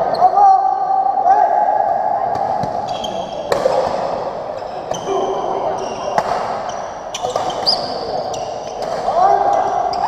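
Badminton doubles rally: rackets strike the shuttlecock about once a second in the second half, with players' shoes squeaking and thudding on the court floor, against a background of spectators' chatter.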